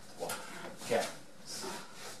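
A man's voice, quietly counting waltz steps in French, a word or two at a time.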